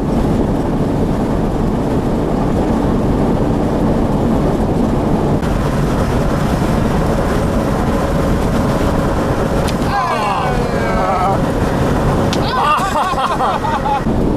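Steady road and engine noise of a vehicle driving at speed on a highway. Brief, faint voices come through about ten seconds in and again near the end.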